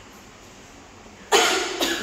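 A person coughing twice in quick succession, close to the microphone, after a quiet stretch; the two coughs come near the end, about half a second apart.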